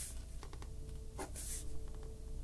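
Pen writing on paper in short scratchy strokes, with a couple of brief louder strokes a little past the middle.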